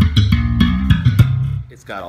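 Sire M7 five-string electric bass played slap-style: a quick run of low notes with sharp slapped and popped string attacks, stopping about one and a half seconds in.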